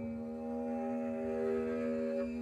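Double bass bowed high on the neck, holding one long steady note with ringing overtones; a few higher overtones swell in about half a second in.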